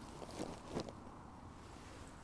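Faint wind on the microphone, with a few soft knocks and rustles of handling in the first second.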